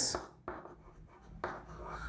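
Chalk writing on a chalkboard: a few short, faint scratching strokes as letters are chalked.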